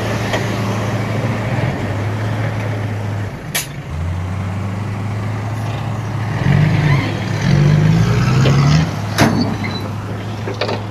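Diesel dump truck engines running under load, one revving up and down between about six and nine seconds in as the loaded truck manoeuvres and the other tips its bed. Two short sharp hisses cut through, about three and a half and nine seconds in.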